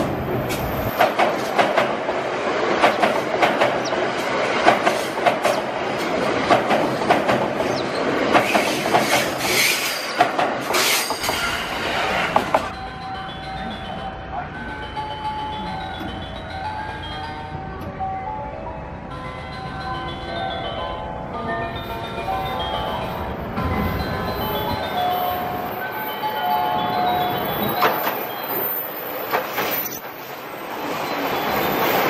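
Limited express electric trains passing through a station at speed. For the first twelve seconds there is dense clatter of wheels over the rail joints, which then cuts off to a quieter stretch. Near the end the noise builds again as the next train arrives.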